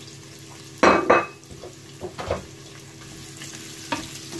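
Chopped red onion sizzling in hot oil in a non-stick frying pan as a wooden spoon stirs it. A couple of loud clatters about a second in, with lighter knocks later.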